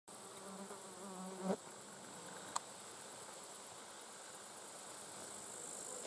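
A flying insect buzzing close by, wavering in pitch, then cutting off sharply about a second and a half in. Behind it runs a faint, steady high-pitched insect chirring, with a single click a little after two and a half seconds.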